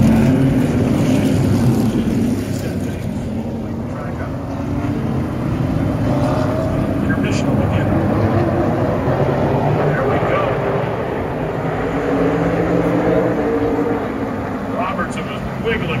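Super late model stock cars running around an oval short track, their engine notes rising and falling as the pack goes by.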